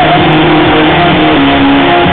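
Live rock band playing loudly, guitar and held sung or played notes, heavily overloaded on a phone's microphone so that it comes through as a dense, distorted wash.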